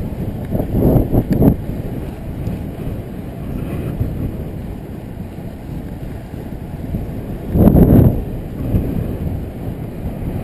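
Wind buffeting the microphone of a camera riding along on a bicycle, a steady low rumble that swells into two louder gusts, about a second in and again late on.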